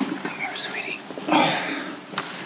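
A baby's brief high-pitched vocal squeak, then a soft breathy sound about a second and a half in, as the baby is lifted from a lap into a man's arms.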